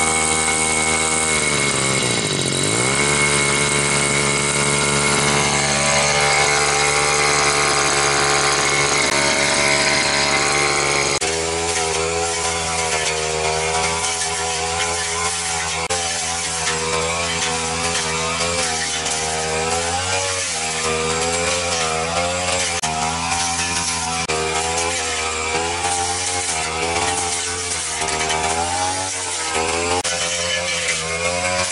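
Backpack brush cutter's small petrol engine running at high speed; about two seconds in, its pitch drops sharply and climbs back. From about eleven seconds on, the pitch wavers up and down as the cutter works through thick weeds.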